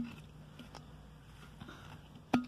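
Hands handling a frozen ice dome: one short tap right at the start, then a few faint light knocks.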